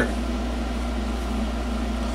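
Steady low hum with an even hiss of room background noise, unbroken and with no distinct event.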